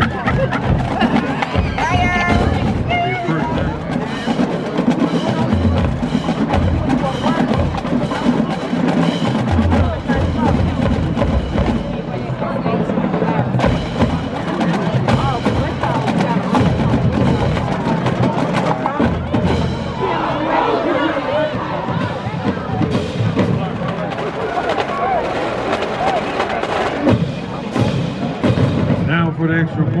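Marching band drumline playing snare, tenor and bass drums in a rapid, steady stream of strokes, with people's voices over it.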